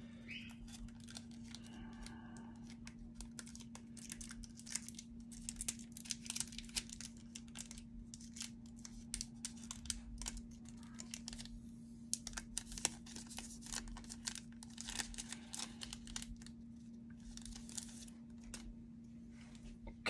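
Thin clear plastic card sleeve being handled, giving faint, irregular crinkling and crackling throughout. A steady low hum runs underneath.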